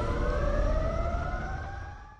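Logo-reveal sound effect: a deep rumble under several slowly rising tones, fading away near the end.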